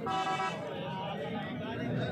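A vehicle horn gives a short, steady toot at the start, over the chatter of a crowd.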